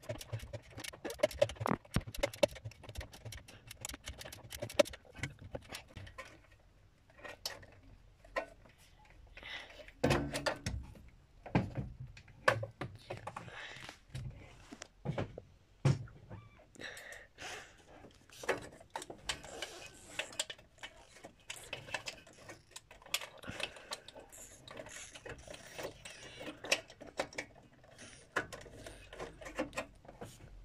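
Ratchet on a spark plug socket worked by hand to loosen a spark plug: irregular metallic clicks and knocks of the tool, with hand and tool handling around the engine.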